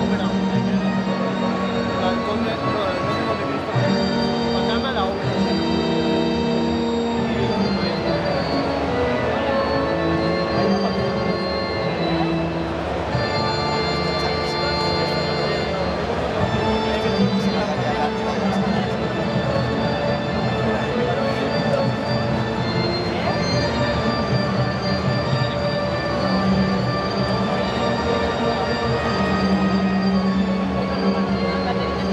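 Electronic keyboard played live: a slow tune over long-held, organ-like notes and chords that change every second or two, without a break.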